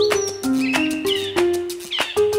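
Instrumental passage of a salsa band. A melody of short stepped notes plays over steady hand percussion, with a few short high gliding chirps above.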